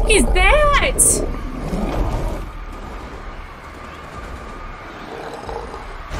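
Screeching cries with steep rising and falling pitch in the first second, from a TV drama's soundtrack, over a heavy low rumble of fire and wreckage that eases after about two seconds into a quieter steady rumble.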